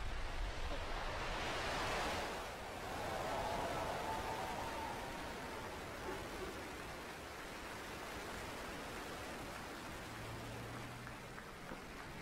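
Falcon 9 rocket's first-stage Merlin engines at liftoff: a steady rushing rumble, loudest for the first few seconds and then easing off as the rocket climbs away.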